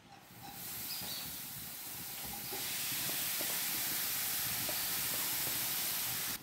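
Grated carrot sizzling as it is tipped into hot ghee in a non-stick kadai, a steady hiss that grows louder about two and a half seconds in, with a few light taps of a wooden spatula.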